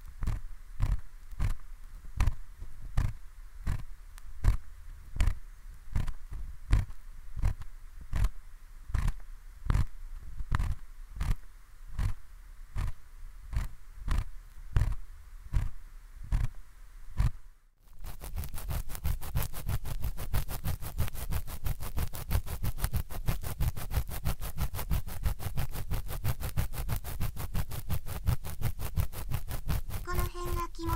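ASMR ear-pick sounds on a binaural dummy-head mic: an ear pick scraping in the ear, slow strokes about twice a second, then after a brief pause about two-thirds of the way in, quick rapid scratching strokes.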